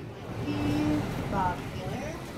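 Faint voice speaking in the background, a few short words, over a low rumble.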